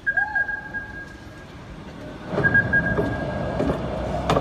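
Opening soundtrack of a film trailer, recorded off a screen: a faint steady high whine and a short rising tone, then about two seconds in a swell of low rumbling ambience with a held drone.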